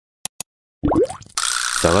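Edited-in intro sound effects for an animated title logo: two quick clicks, then a short electronic effect with rising pitch sweeps, then a hissing noise that carries on as a man's voice begins near the end.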